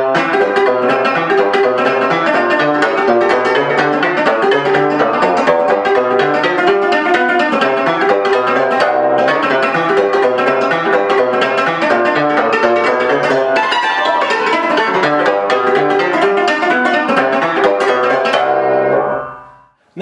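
Concert cimbalom played in Romanian folk style with flexible cotton-and-string-tipped hammers: fast, percussive runs of struck metal strings. The playing stops and rings away about a second before the end.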